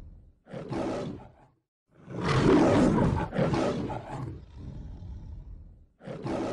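Lion roaring in separate bouts: a short roar about half a second in, then a longer, louder roar from about two seconds that trails off.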